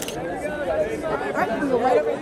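Several people talking over one another in a group: overlapping, indistinct chatter.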